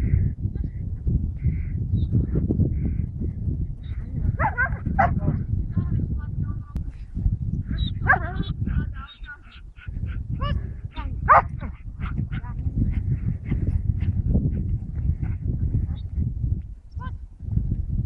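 Young Belgian Malinois bitch giving a few short, high-pitched whines while heeling close beside her handler, over a steady low rumble.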